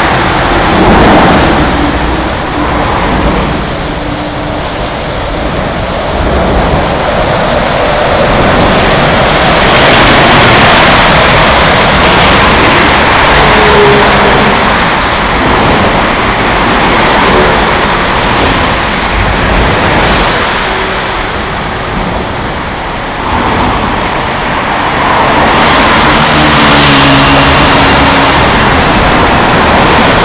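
Expressway traffic passing close by, a continuous loud rush of tyres and engines that swells as vehicles go past, with the engine hum of passing vehicles briefly standing out about halfway through and again near the end.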